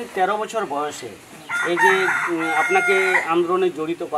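A rooster crowing once, one long call of nearly two seconds starting about a second and a half in, heard over speech.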